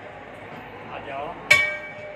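A hanging brass temple bell struck once about one and a half seconds in, ringing on with several clear tones that slowly fade.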